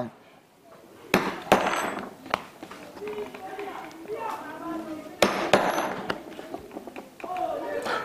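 Hand-pressed brogue perforating punch, three hole-punch tubes welded together, cutting through leather on a work table: sharp clicks with short crunchy scrapes, in two bursts about four seconds apart.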